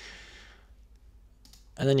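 A single faint mouse click about one and a half seconds in, then a man's voice begins.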